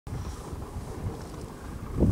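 Wind buffeting the microphone: an uneven low rumble, with a brief louder gust at the very end.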